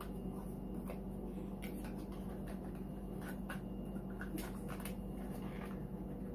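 Faint scraping and light taps of a small paperboard box being handled and opened by hand, a few scattered clicks over a steady low hum.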